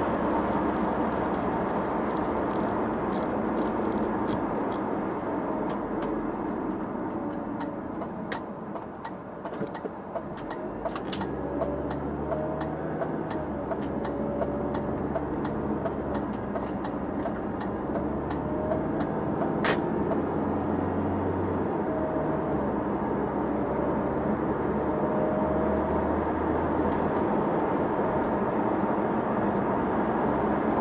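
Inside the cabin of a 2005 Audi A4 on the move: steady engine and tyre noise that drops as the car slows for a turn about a third of the way in, then rises again as it pulls away with the engine pitch climbing. Through the first two-thirds the turn-signal indicator ticks about three times a second, then stops once the turn is made.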